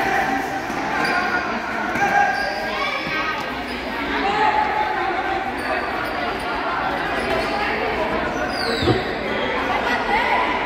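Futsal ball being kicked and bouncing on a gym court, under voices calling out across a reverberant sports hall. One sharp kick stands out near the end.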